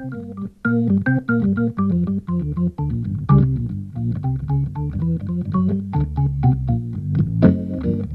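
Hammond organ played jazz-style: a quick run of short single notes in the right hand over sustained low chords and bass notes.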